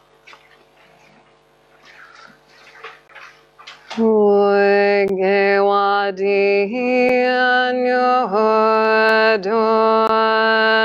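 Faint rustling, then about four seconds in a woman starts chanting a Tibetan Buddhist dedication prayer in long, steady held notes that step between a few pitches.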